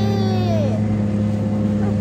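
Jet ski engine running with a steady low hum under a rushing noise, while the craft is under way on the water.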